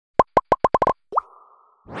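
Cartoon-style plop sound effects: about seven short pitched pops in quick succession, speeding up, then a single rising bloop with a fading tail. A rising swoosh near the end leads into a laugh.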